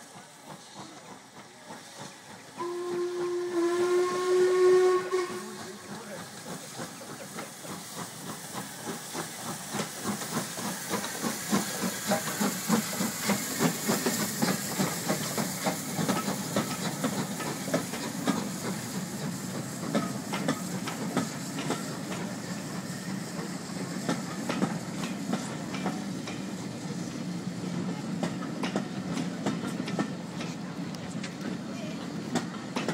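A steam locomotive whistle blows once for about three seconds, a chord of several tones, a few seconds in. Then a steam locomotive works past, its exhaust beating in a quick steady rhythm over the rumble of the train on the rails, growing louder and keeping on to the end.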